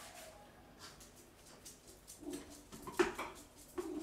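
A few faint clicks and a light knock about three seconds in as a coffee plunger (French press) is handled on the kitchen counter, with a couple of brief low hums in between.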